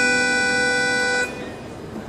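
Accordion holding a long, steady chord that stops about a second in, leaving a short quiet gap before the next chord.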